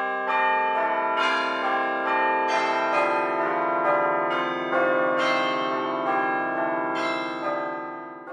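Bells ringing: a series of struck, pitched notes that each ring on and overlap, with a new stroke every half second or so. The ringing fades near the end.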